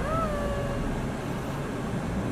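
A single drawn-out vocal sound at the very start, rising and then holding level for under a second, over the steady low hum of a car cabin.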